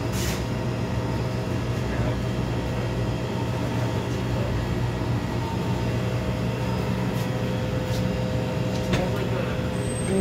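Steady low mechanical hum of shop equipment, such as refrigerated display cases and ventilation, with a couple of faint steady tones above it.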